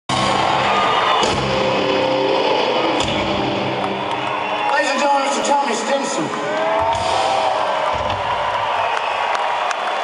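Live rock band playing on an arena PA with sustained keyboard chords and a few drum hits, heard through a crowd's cheering. About five seconds in the low end of the music drops away, leaving crowd cheers and whoops over lighter playing.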